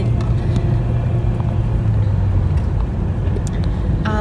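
Steady low rumble of engine and tyre noise heard from inside a moving car's cabin.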